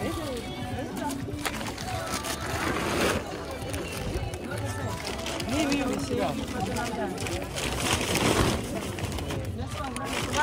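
Several voices chattering at an open-air market stall, not close to the microphone. There are rustling bursts about three seconds in and again about eight seconds in, as produce and bags are handled.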